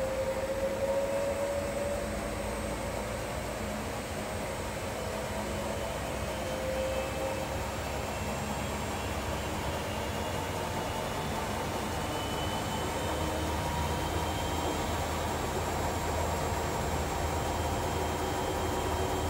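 Commercial front-loading washing machine spinning its drum: a steady rushing hum with a faint motor whine that climbs slowly in pitch and grows a little louder as the spin builds.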